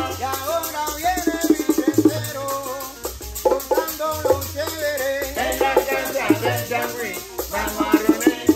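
A changüí band playing: a tres guitar strummed in quick runs over bongo drums, a steady maraca shake and a low bass line, with men's voices singing through the middle.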